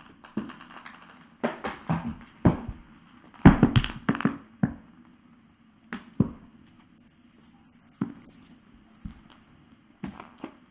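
Kittens playing: scampering paws and scuffling knocks on a floor, rug and small bed, uneven, with the loudest cluster about three and a half seconds in. Near the end a high scratchy rustle lasts about two and a half seconds.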